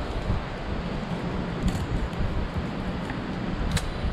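Steady low wind rumble on the microphone, with a couple of faint clicks, about two seconds in and near the end, from a fillet knife working a fish on a plastic cutting board.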